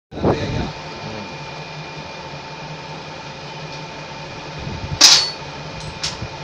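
Hand tool and loose screws clinking and scraping on a steel panel, with one sharp metallic clatter about five seconds in, over a steady electrical hum. A short low thump opens the clip.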